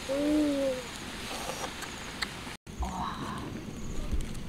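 A young boy's short, rounded 'ooh' call, a single pitched hoot lasting under a second that rises slightly and falls away. Quieter background with a few faint clicks follows.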